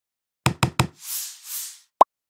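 Logo-intro sound effects: three quick knocks about half a second in, followed by two airy whooshes and a short hit at the end.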